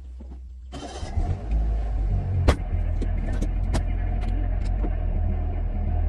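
A car engine starting under a second in, with a brief burst of cranking, then idling steadily with a low hum. A sharp click comes about two and a half seconds in.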